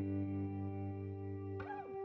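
Background rock music: a distorted electric guitar holds a sustained chord, then slides down in pitch near the end.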